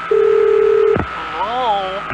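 A telephone dial tone, a steady low two-note hum, held for about a second and cut off by a click. A voice follows.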